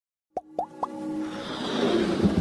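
Three quick plop sound effects about a quarter second apart, then a music bed that swells and builds: the opening of an animated logo intro's sound design.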